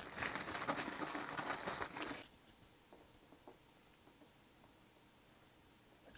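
A clear plastic bag of spare diecast parts crinkling as it is handled and rummaged through, with many small clicks, for about two seconds. It then cuts off suddenly to near silence with a few faint ticks.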